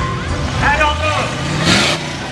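A 1957 Chevrolet cruising slowly past at parade pace, its engine rumbling low, with a line rising in pitch in the second half and a brief loud hiss near the end.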